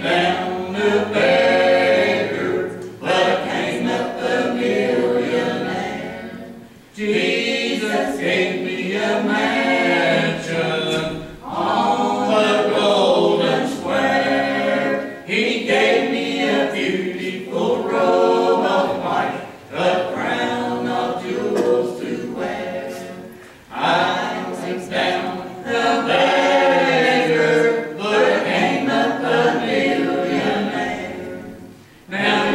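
A small group of men and women singing a gospel song in harmony, a cappella, in long phrases with short breaks between lines.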